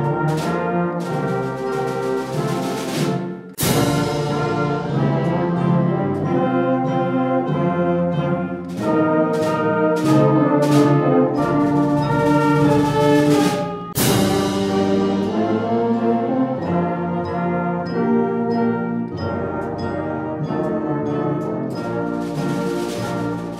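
Concert band playing a slow processional: held brass chords led by trombones, with flute, swelling toward the middle. Two percussion crashes ring out, a few seconds in and again about two-thirds through.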